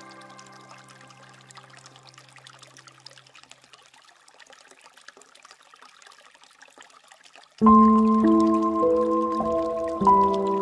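Bamboo water fountain trickling steadily under slow, soft instrumental music. A held chord fades away over the first few seconds, leaving only the quiet trickle. About three-quarters of the way through, a new chord comes in suddenly and loudly, with a few note changes after it.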